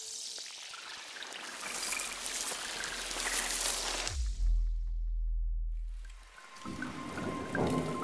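Logo-intro sound effects: a hissing, swirling whoosh that builds for about four seconds, then a deep bass hit that drops in pitch and holds for about two seconds. It is followed by a sparkling shimmer with a steady high ringing tone.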